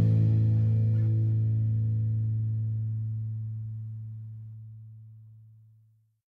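The final chord of a garage-rock song is held and left to ring out. The higher notes die away first, leaving a low note that fades to silence over about six seconds.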